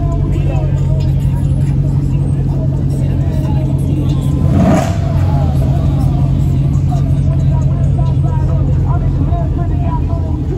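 Dodge Challenger SRT's V8 running at a steady, deep idle through its quad exhaust, with one short louder burst about halfway through. Voices talk in the background.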